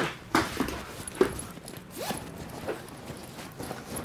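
Footsteps of slide sandals on a wooden floor, a few short irregular knocks, followed by the rustle of a fabric backpack being handled.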